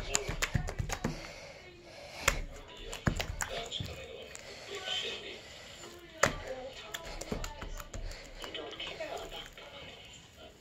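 Homemade stretchy slime being pulled, stretched and squished by hand, giving irregular sticky clicks and pops.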